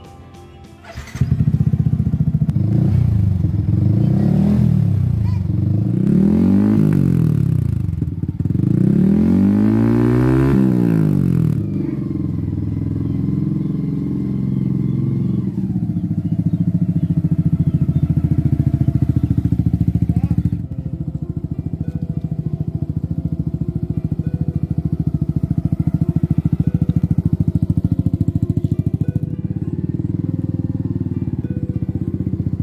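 Yamaha sport motorcycle engine starting about a second in, then revved up and back down twice. After that it runs steadily as the bike rides off.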